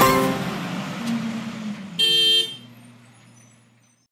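The last fiddle-led notes ring out and fade. About two seconds in, a car horn gives one half-second two-tone honk, which dies away in a short echo.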